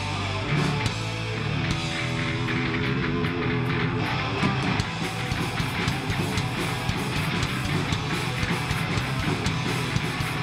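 Hardcore punk band playing live: distorted electric guitars and pounding drums in an instrumental stretch of a song.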